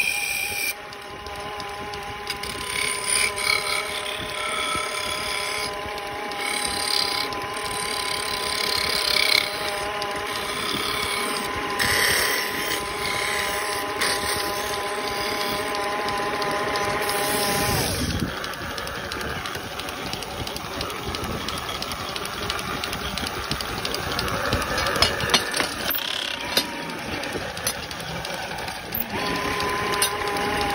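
Wood lathe motor running with a steady whine while a hand chisel scrapes and shaves the spinning wooden workpiece. About two-thirds of the way through the whine drops away, then comes back with a rising pitch near the end as the lathe speeds up again.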